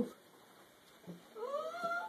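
A pet's high, pitched cry, once, rising and then held for about half a second near the end.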